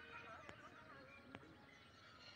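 Near silence: faint outdoor background, with two faint clicks, about half a second and just over a second in.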